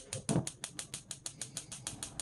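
Gas range spark igniter clicking rapidly and evenly, about eight to nine clicks a second, as a burner is lit for high heat.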